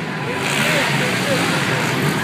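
Four-stroke dirt bike engines racing around the track, a steady mechanical haze mixed with crowd chatter and faint voices.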